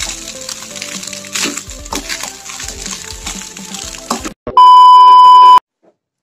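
Background music over a metal spatula scraping and stirring fried noodles in a wok, with frequent short clatters. After a brief gap near the end comes a loud, steady, high beep lasting about a second.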